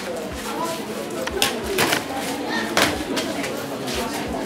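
People talking in a room, with a few sharp knocks or clatters through the middle.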